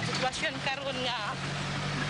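A person talking in Cebuano, with a steady low hum underneath.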